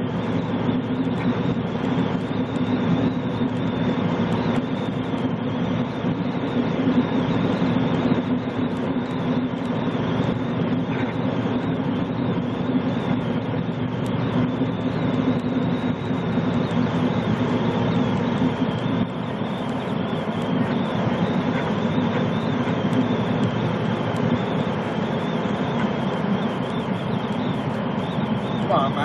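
Semi truck's engine and tyre noise heard inside the cab while cruising at highway speed: a steady, unbroken drone.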